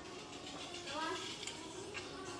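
Faint voices and general supermarket background murmur; a short stretch of quiet speech comes through about a second in.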